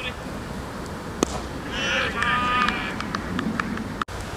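Open-air ambience of wind rumbling on the microphone, with distant voices and one sharp knock about a second in.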